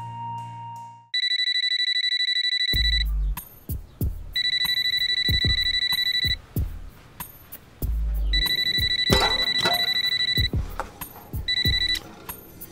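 Smartphone ringing with a trilling telephone-bell ringtone, in four rings of about two seconds each with short gaps between them, the last cut short. A few soft knocks and low thuds fall between the rings. Gentle flute music fades out just before the first ring.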